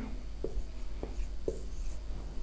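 Marker pen writing on a whiteboard: a few short strokes, about half a second apart, as a number is written and circled.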